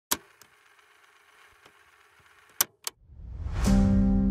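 Logo intro sound effects: a sharp click, a faint hum and hiss, two more sharp clicks about two and a half seconds in, then a rising whoosh that swells into the start of a music track with sustained keyboard chords and bass near the end.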